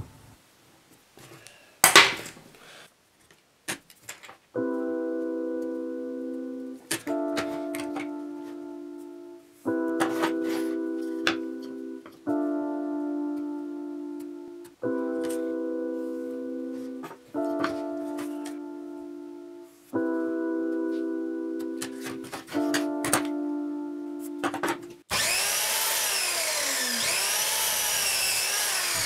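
Background music of sustained keyboard chords, each fading slightly, changing about every two and a half seconds, over light ticks and scratches of marking on the wood. About 25 seconds in, a miter saw starts and runs loudly.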